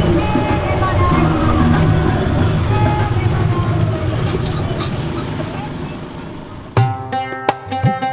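Motorcycle-rickshaw engine and road noise from a bumpy tuk tuk ride, slowly fading. Near the end, music with hand drums and plucked strings starts abruptly.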